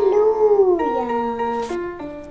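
A child singing one long, wavering note that swoops up and then slides down in pitch, over a steady instrumental backing.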